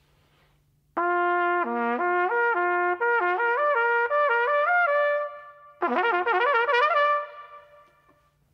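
Solo trumpet playing fast lip slurs (a flexibility exercise) in two phrases, with a short gap between them: first from about a second in, notes changing quickly and working their way upward, then a shorter, faster run near the end. Each phrase rings on briefly. This is an exercise that only sounds when the air is moving fast enough.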